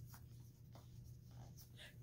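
Near silence: room tone with a low steady hum and a few faint, brief scratchy rustles.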